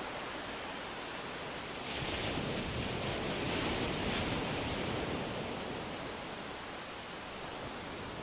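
Sea waves washing onto a beach: a steady rush of surf that swells about two seconds in and eases off again toward the end.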